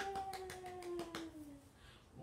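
Quick light hand claps, about six a second, fading out after a little over a second, over one long vocal tone that slides slowly down in pitch and dies away before the end.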